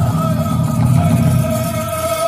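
Powwow drum group singing a men's fancy dance song, the voices holding one long high note with no drumbeats in these seconds.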